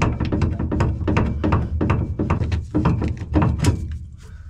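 Rapid hammer blows on the steel pivot pin of a combine's auger swing cylinder, about four a second with a faint metallic ring, stopping near the end. The pin is seized in its joint, packed tight by years of dust and grain.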